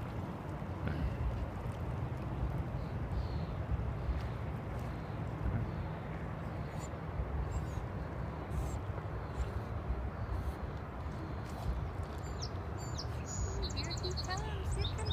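Steady low rushing outdoor noise beside a river, with no clear event standing out of it. A few short high bird chirps come near the end.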